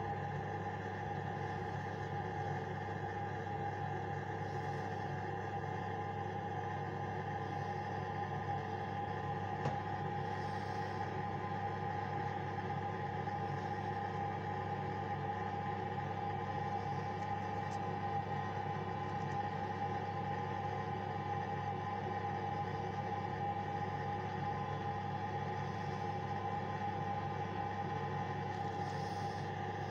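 A steady hum made of several constant tones, low and mid-pitched, unchanging throughout.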